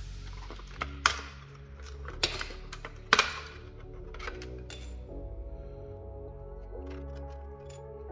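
Background music, with a few sharp plastic clicks and clacks in the first three seconds, the loudest about three seconds in, as the plastic body of a 1/14-scale RC car is worked loose from its chassis.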